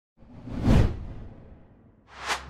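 A single whoosh sound effect with a deep low end. It swells to a peak under a second in and then fades away, as an intro sting for a channel logo.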